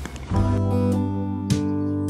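Background music, an acoustic guitar strumming held chords, starting a moment in with a fresh strum about halfway through.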